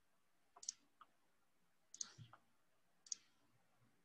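Faint computer mouse clicks, about five single clicks spread a second or so apart over near silence.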